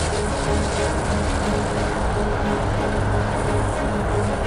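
Show soundtrack with music over a steady low rumble, like a train sound effect.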